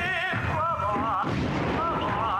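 Operatic singing with a strong, wide vibrato, over low thuds and rumble.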